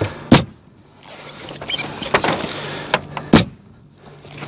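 Pneumatic roofing nailer firing twice, driving nails through the edge of galvanized steel valley metal into the roof deck, the two shots about three seconds apart. A softer knock sounds between them.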